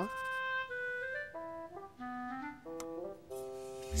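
Cartoon background music: a light tune of separate held notes that step down and then back up.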